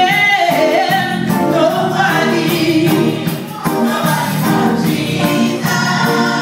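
A church choir singing a gospel song, several voices together over a steady beat.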